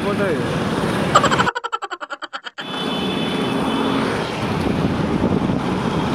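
Busy street traffic noise with voices. About a second and a half in, the street sound cuts out for about a second under a short, rapidly pulsing cartoon-style comedy sound effect. The street sound then comes back.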